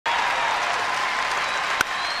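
Ballpark crowd clapping and cheering steadily, then a single sharp crack of a wooden bat hitting the ball, about 1.8 seconds in.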